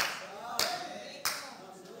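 Slow, single hand claps: three sharp claps about two-thirds of a second apart, each echoing briefly in the room.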